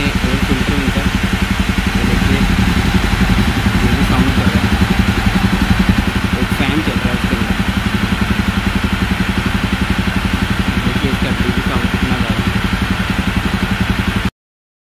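Jawa 42 Bobber's single-cylinder engine running steadily at idle, heard close up, with an even rapid pulse.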